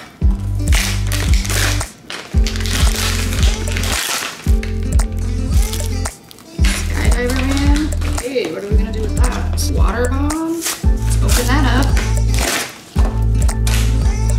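Background music with a heavy, repeating bass beat that drops out briefly every couple of seconds, and a voice singing over it in the middle.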